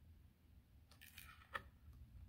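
Near-silent room tone with a few faint rustles and one soft tick about a second and a half in, as a page of a board book is turned.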